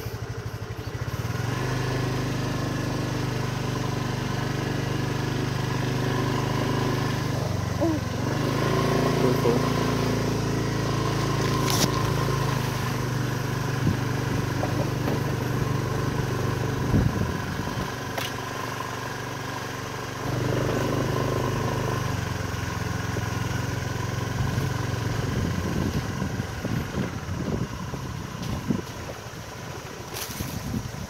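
Small motorcycle engine running steadily as the bike is ridden along a dirt trail, the engine speed rising about a quarter of the way in, easing off a little past halfway and picking up again soon after. Near the end the bike rattles and knocks over the rough ground.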